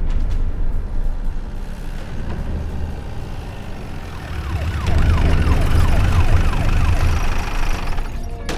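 A siren over a deep, steady rumble, with a run of quick falling tones in its second half.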